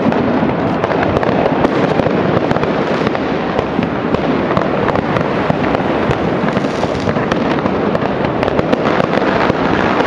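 Dense, unbroken crackle of many firecrackers and fireworks going off all around, countless overlapping bangs and pops with no let-up.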